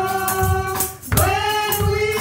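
A woman singing a gospel song through a microphone, holding long notes with a short break about a second in, over a steady percussion beat.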